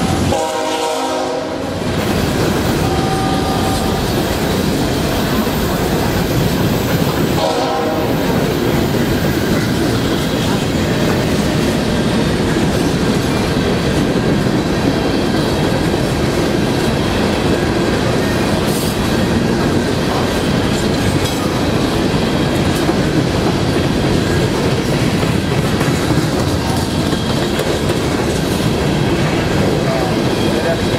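Coal hopper cars of a freight train rolling past at speed, a loud steady rumble with the wheels clattering over the rail joints. A train horn sounds through the first two seconds and again briefly about eight seconds in.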